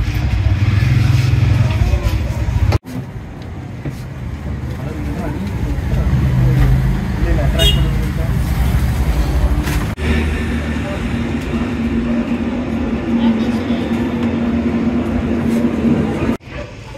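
Road traffic with people talking, in three stretches split by two abrupt cuts; a steady low hum runs through the last stretch.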